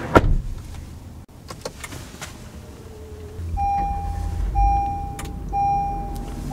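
A switch click, then from about three and a half seconds in the Honda Odyssey's dashboard warning chime sounds over a low rumble. The chime is a steady tone repeated in segments of about a second with short gaps.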